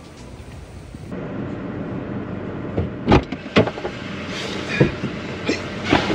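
A person climbing into a car's driver's seat: a series of sharp knocks and clicks from the door, seat and clothing over steady cabin background noise. The first second is the tail of background music.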